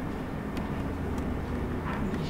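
Steady low rumble of meeting-room background noise, with a few faint small clicks.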